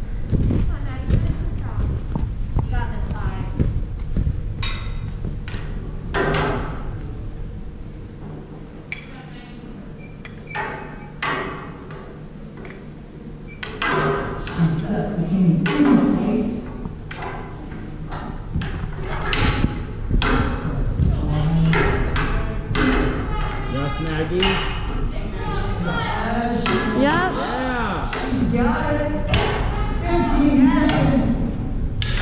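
Indistinct voices echoing in a large gym hall, with scattered thuds and knocks from movement on mats and equipment.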